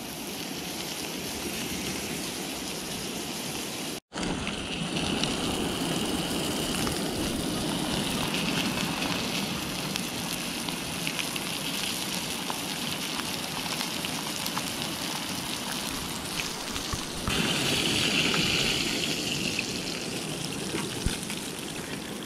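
Trout fillets frying skin-side down in butter in a steel pan on a gas camp stove: a steady sizzle. It briefly cuts out about four seconds in and grows louder near the end.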